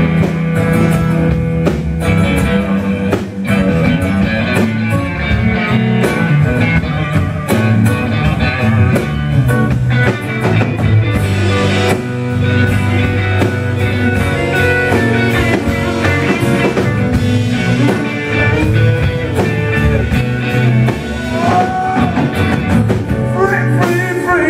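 Live blues band playing a slow minor blues instrumental break: electric guitar and acoustic guitar over a drum kit, with a low bass line. Near the end a man's voice starts singing over the band.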